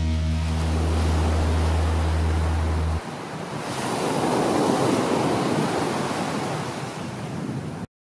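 Sea surf on a sandy beach, small waves breaking and washing up the shore. A low held note of music runs over it and stops about three seconds in, leaving the surf alone. The surf swells as a wave breaks a second or two later, and the sound cuts off suddenly just before the end.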